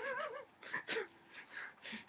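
A man's soft, high-pitched giggling, wavering in pitch at first, then trailing off in a few short, quieter snatches.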